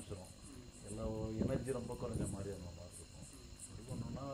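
High-pitched insect chirping repeating several times a second in the background, with a man's voice speaking briefly in the middle.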